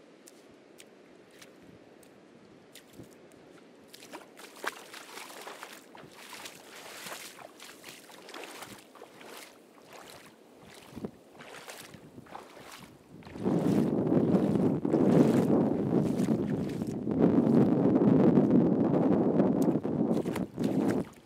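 Ocean surf on a beach. It starts faint, with scattered light ticks, then about two-thirds through turns into a loud rushing wash that comes in two long surges with a brief dip between them.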